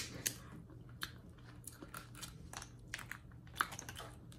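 Faint eating sounds at a seafood tray: scattered small clicks and crackles of crab leg shells being handled and picked at, along with chewing. Two clicks stand out, one just after the start and one about three and a half seconds in.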